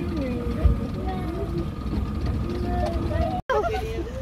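Indistinct voices talking over a steady low rumble, with a brief dropout about three and a half seconds in.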